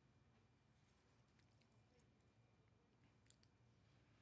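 Near silence: faint room tone with a few faint clicks, two close together near the end.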